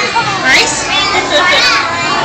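A young child's voice babbling and squealing, with a high rising squeal about half a second in, amid other children's voices.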